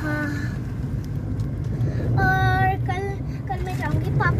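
Steady low rumble of a moving car heard from inside the cabin. A girl's voice comes over it briefly at the start and again near the end, with one held sung note about two seconds in.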